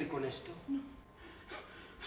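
Speech only: a man's voice finishing a spoken line, then a short spoken "no" and a few quiet breathy vocal sounds.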